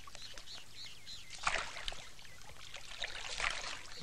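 Faint bird chirps over soft water sounds, with two short swells of splashing, about a second and a half in and again after three seconds, from a wooden canoe paddle dipping into the water.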